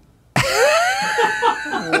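Men laughing loudly, starting suddenly about a third of a second in: a rising whoop that breaks into a run of short laughs.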